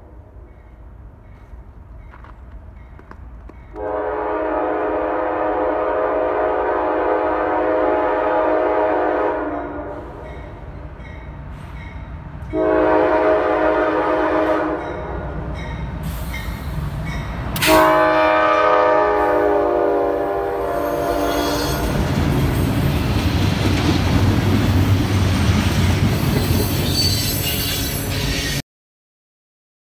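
A diesel freight locomotive's multi-note air horn sounds a long blast, a short blast and then another long blast, the pattern of the grade-crossing warning signal. After the last blast the locomotive and its freight cars pass close by with a steady, loud rumble of wheels on rail.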